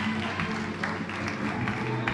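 Music playing with an audience clapping over it, a run of sharp claps about every half second.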